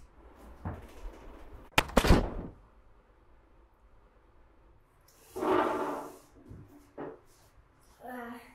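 A room door swung shut, its latch clicking and the door knocking into the frame about two seconds in. A softer rustling noise follows a few seconds later.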